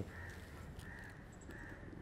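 Faint outdoor background with a few short, distant bird calls.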